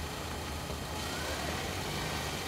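A car engine idling with a steady low rumble.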